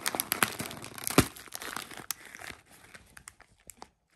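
Crisp packet crinkling as it is squeezed in the hand, with one sharp pop about a second in as the packet bursts; the crinkling then dies away.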